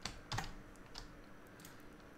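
A few faint clicks of a computer keyboard being used, bunched in the first second.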